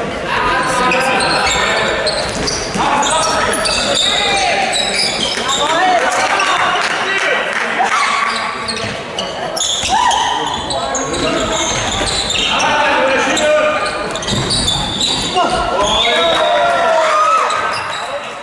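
A handball bouncing on a sports-hall floor as players dribble, among players' shouted calls and voices that fill the hall.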